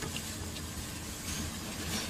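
A steady low machine hum with a hiss under it, even in level throughout, with a couple of faint ticks.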